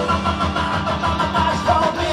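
A rock'n'roll band playing live and loud: electric guitars, bass and drums, with chords held steadily and no singing until the very end.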